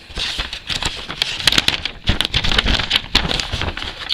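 A folded paper letter rustling and crackling as gloved hands pull it from a parcel and unfold it, with dense sharp crackles through the middle.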